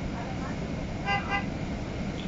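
A vehicle horn gives two short toots about a second in, over the steady low rumble of a city bus riding in slow traffic.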